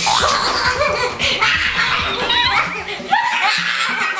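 People laughing loudly, a string of rising and falling laughs.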